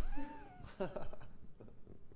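A brief, high-pitched laugh that rises and falls in pitch, followed by a few fainter chuckles.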